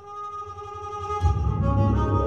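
Electric cello being bowed: a sustained pitched note starts. About a second in, a loud deep bass layer comes in beneath it.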